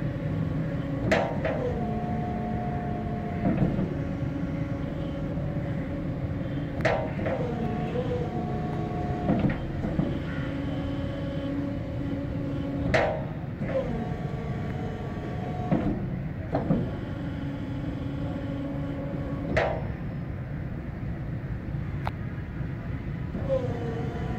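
Hydraulic drive unit of a D-type road blocker running in bursts of two to three seconds, each starting and ending with a sharp clunk, about every six seconds, as the wedge barrier is worked, over a steady background hum.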